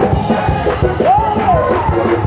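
Live gospel music in a church: a steady drumbeat under organ chords, with a voice sliding up and holding a note about a second in.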